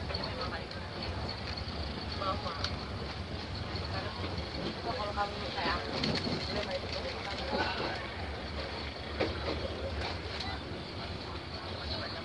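Steady rumble of a moving passenger train heard from inside the coach: wheels running on the rails, with occasional light clicks.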